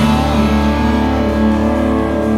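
Live band playing an instrumental passage with no vocals: electric guitar over bass and drums, held steady and loud.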